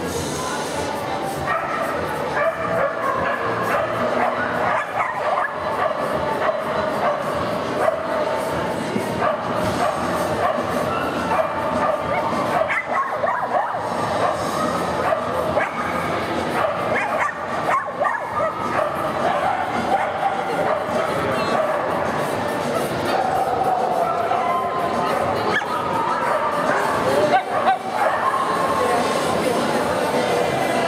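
A dog barking repeatedly, over a background of voices and music.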